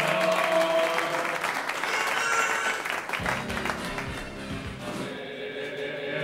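Choral music with a group of voices singing, over audience applause that dies away about five seconds in.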